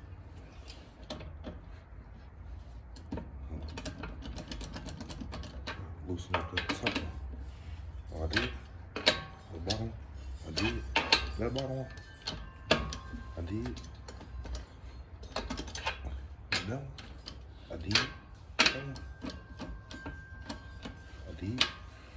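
Hand socket ratchet clicking in irregular bursts as car wheel lug nuts are worked loose, with scattered metal clinks and knocks.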